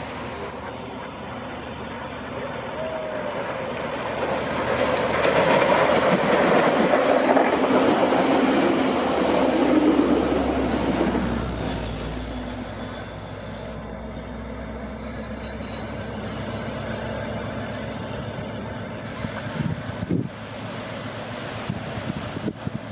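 Sounder bilevel commuter train passing close by, cab car leading and diesel locomotive pushing at the rear. The rumble of wheels on rails builds, is loudest for several seconds in the first half, then fades as the train moves away, leaving a thin high whine.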